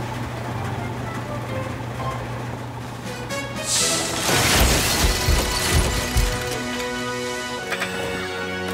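Cartoon soundtrack: a steady low drone, then about four seconds in a loud rushing rumble lasting about two seconds, under light background music that carries on after it.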